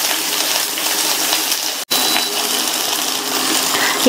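Shallots and garlic cloves sizzling steadily in hot oil in a stainless steel kadai as they are stirred with a wooden spatula. The sound cuts out for an instant just under two seconds in.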